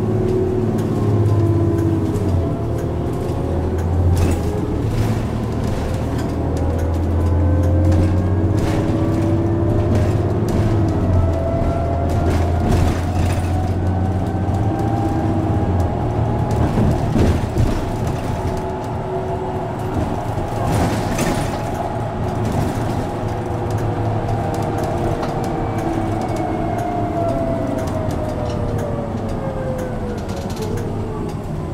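Transit bus under way, heard from on board: a steady low engine drone with drivetrain whines that climb slowly in pitch as the bus gathers speed, then fall away as it slows near the end. There are occasional brief rattles.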